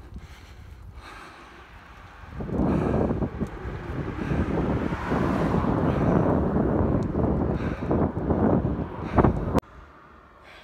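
Wind buffeting a phone's microphone: gusty rumbling noise that comes up a couple of seconds in and stops suddenly near the end.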